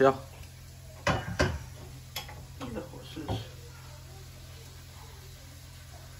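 Stainless steel wok and utensil knocking and scraping as sesame balls are turned in shallow oil, with two louder knocks about a second in and a few lighter ones after. A steady low hum runs underneath.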